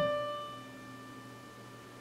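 Piano tone from a Lippens Janko-layout keyboard. The last note of a short melody rings out and fades away over about a second and a half.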